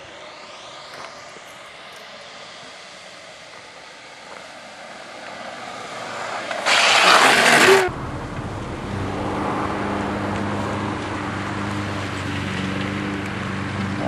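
A steady rush of noise that builds, then a loud rush of about a second that cuts off suddenly. After it, a Dodge sedan's engine running at idle close by, a steady low hum.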